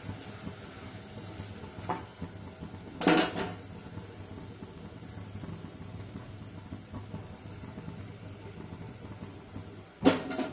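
Spoon stirring greens in a stainless steel cooking pot, with one sharp clank of metal against the pot about three seconds in and a smaller click just before it, over a faint steady background.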